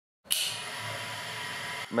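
Electric motor of a bench-grinder balancing rig running steadily, a hum with a constant whine and hiss, its rotor deliberately unbalanced with plasticine and carrying a trial mass while its vibration is measured. It starts abruptly with a click about a quarter-second in.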